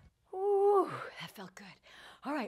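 A woman's wordless exclamation just after a hard cardio set, held on one pitch for about half a second and dropping at the end, followed by short breathy sounds.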